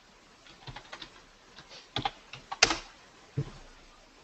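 Typing on a computer keyboard: a quick run of separate keystrokes, with one louder stroke a little past halfway.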